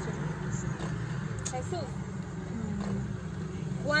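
Steady low rumble of an idling car heard from inside its cabin, with faint muffled talk from outside.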